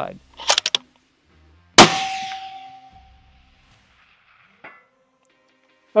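A 6 Creedmoor rifle fires a single sharp, loud shot about two seconds in, with a ringing tail, preceded by a few short clicks. About three seconds after the shot a faint ding comes back from the distant steel target, the sound of a hit.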